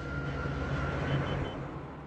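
Armoured military vehicles driving along a road: a steady low engine drone with tyre and road noise, fading toward the end.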